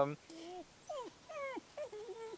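A dog whining: about five short, high whimpers, each bending up or down in pitch.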